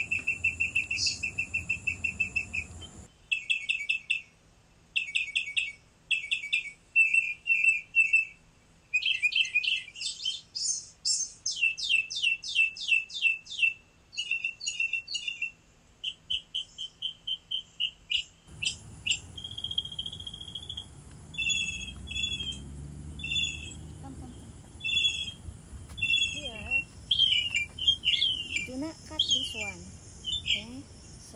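Songbirds chirping in quick runs of short, high repeated notes, changing phrase every second or two, with a stretch of fast downward-sweeping notes in the middle.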